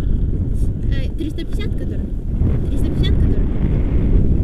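Wind buffeting the camera microphone in a paraglider's airflow, a steady low rumble, with short bursts of a person's voice about a second in and again near three seconds.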